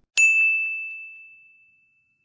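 A single bright ding, a bell-like tone struck once just after the start that rings out and fades away over about two seconds: an editing sound effect accompanying a subscribe-button graphic.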